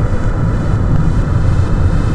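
A car driving at highway speed: a steady, loud low rumble of road and wind noise heard from inside the moving car.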